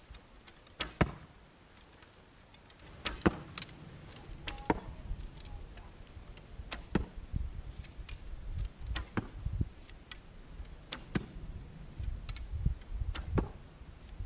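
A whip being cracked: a series of sharp, loud cracks, roughly one every two seconds, over a low rumble.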